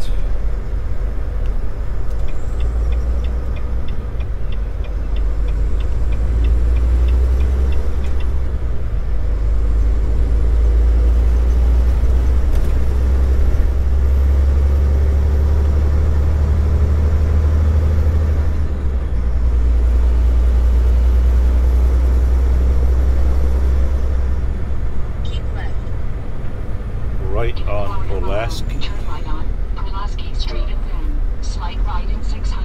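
Steady low engine drone and road noise of a Volvo VNL860 semi truck driving on the highway, heard inside the cab. The drone changes in pitch and level a few times. A few seconds in there is a quick run of light ticks.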